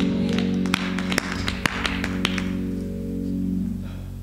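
Live band ending a song: a held keyboard chord rings on and fades away near the end, with several sharp taps over it in the first half.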